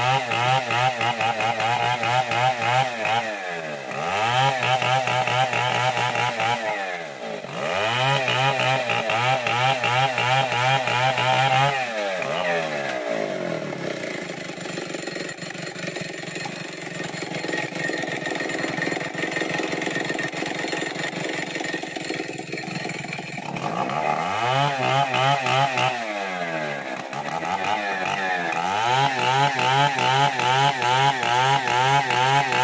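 STIHL chainsaw cutting through a felled kayu bawang log at full throttle, its engine note dipping briefly a couple of times. About twelve seconds in it drops to a lower, quieter running, then revs back up near twenty-four seconds and cuts again.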